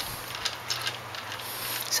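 A few light clicks from the exposed gears and shift parts of a Yamaha T135 transmission being moved by hand, over a steady low hum.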